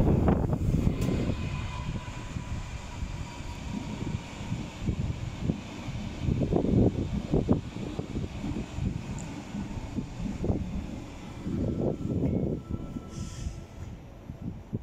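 Berlin U-Bahn train running over the tracks: a low, uneven rumble that swells and fades, with a faint steady whine in the first few seconds.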